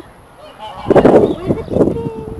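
Domestic fowl calling: two harsh, raspy calls, about a second in and again near the end.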